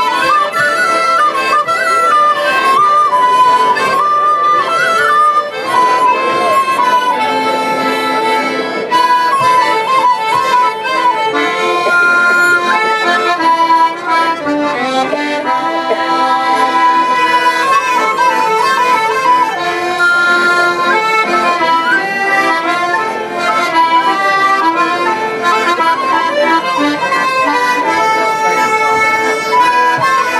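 A traditional folk tune played live on a diatonic button accordion, with a recorder and a fiddle, continuing without a break.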